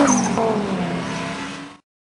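Engines of two drift cars revving as they pull away down the track, the pitch falling and the sound fading. It cuts off suddenly near the end.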